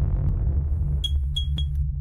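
Electronic logo-intro sound design: a deep, steady low drone with three short, high pings in quick succession about a second in.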